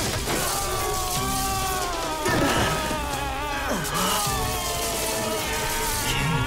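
Cartoon action soundtrack: dramatic background music with energy-beam sound effects, and two sudden sweeping crash-like hits, one a little past two seconds in and one near four seconds.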